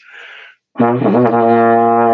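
A short breath in, then about a second in a trombone starts a steady low B-flat long tone in first position, the bottom note of a lip slur; its pitch wavers briefly just after the attack and then holds.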